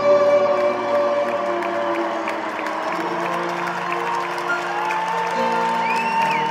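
Live band music in a large arena: held chords with piano, under a steady haze of crowd cheering and applause.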